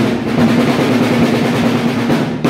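Drums played in a rapid, continuous roll, with a steady held tone beneath them, as live festival music at a temple puja.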